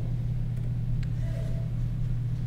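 Steady low hum in the background of the recording, with two faint clicks about half a second and a second in from computer keyboard keys as a letter is typed.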